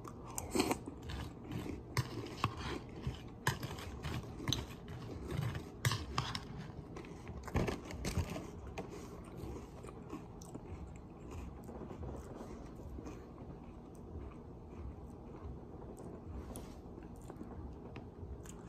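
A mouthful of crunchy cereal, Chocolate Chip Cookie Dough Krave mixed with Toast Crunch, chewed close to the microphone: sharp crunches come thick and fast for the first half, then ease into softer, sparser chewing.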